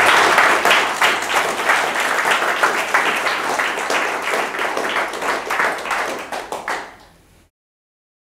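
Audience applauding, a dense patter of many hands clapping that thins out near the end and then cuts off suddenly.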